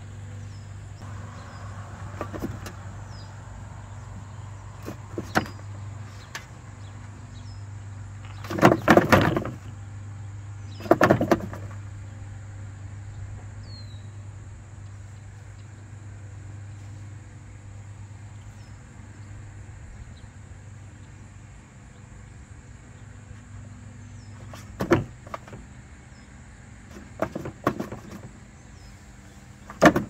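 A freshly cut hen flapping and kicking inside a sheet-metal killing cone in short bursts, two about nine and eleven seconds in and two more near the end: the nerve spasms of a bird bleeding out. A steady low hum runs underneath.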